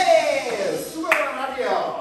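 A man's voice calls out, sliding down in pitch, with a single sharp clap about a second in.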